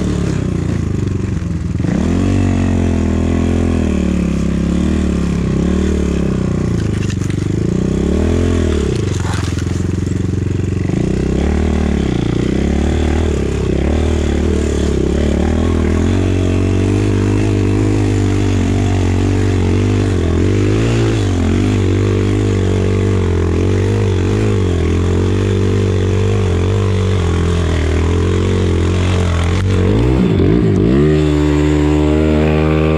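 250 cc enduro motorcycle engine running under way, its revs rising and falling again and again with the throttle. It is held in first gear because the gear-shift lever is broken.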